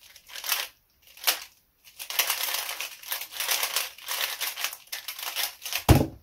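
Square-1 puzzle turned fast in a speed solve: scattered plastic clacks, then a quick unbroken run of clicking from about two seconds in. It ends just before six seconds with one loud slap of hands coming down on the timer to stop it.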